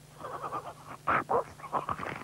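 Cartoon sound effects: a run of short, irregular voice-like noises, loudest in two sharp bursts just over a second in.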